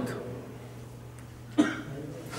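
A man's short cough about one and a half seconds in, coming after a brief pause in his talk. A low steady hum sits underneath.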